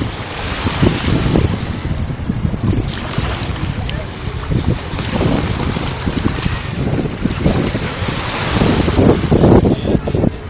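Wind buffeting the microphone, with small waves washing and splashing in the shallows of a rocky shore.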